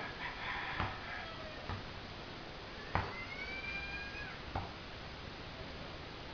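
A rooster crowing once, one long call of just over a second about three seconds in. A few sharp thumps of a basketball bouncing on concrete come in between, the loudest just before the crow.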